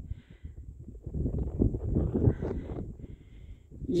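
Wind buffeting the microphone: a low, uneven noise that swells and fades in gusts, loudest in the middle.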